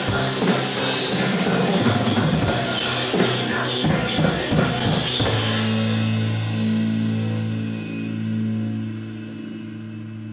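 Rock music with a full drum kit playing until about five seconds in, when the drums stop and the band ends on a long held chord that slowly fades away.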